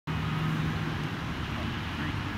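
Steady low outdoor background rumble, with a faint steady hum through the first second.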